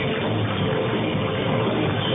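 Live rock band playing, with electric guitar and drum kit.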